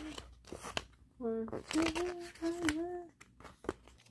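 A young woman hums a short wavering tune with her mouth closed, after a brief lower 'mm'. Paper clicks and rustles come from the pages of a CD booklet being turned.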